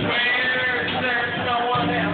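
A man singing a long, wavering held note, with live band music underneath.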